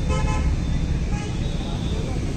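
Steady rumble of road traffic with a vehicle horn tooting briefly.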